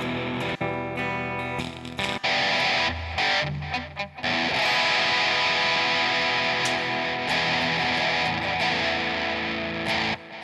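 Electric guitar playing an instrumental passage between sung lines. The sound dips out briefly a few times in the first four seconds, then runs on steadily.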